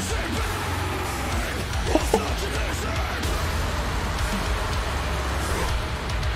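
Heavy metal band music playing as a steady, dense wall of distorted electric guitars.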